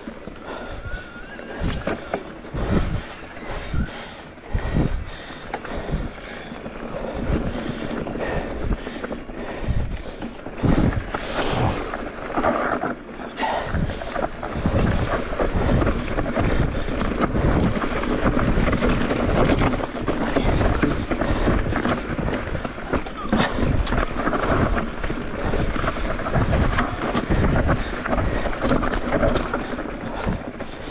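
Electric mountain bike descending a rocky trail: wind rushing over the camera microphone, tyres rolling over dirt and stones, and frequent knocks and rattles from the bike as it hits rocks and roots.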